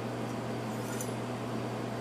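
A knife blade drawn lightly down a steel honing rod, heard as one faint, short metallic swipe about a second in, over a steady low background hum.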